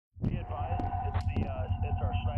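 Helicopter rotor beating in a fast, even rhythm of about ten beats a second, starting a moment in, with voices faintly over it.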